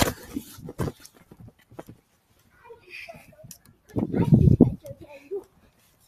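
Handheld camera being moved and rubbed, with scattered clicks and a brief rough rumble about four seconds in, under faint voice sounds.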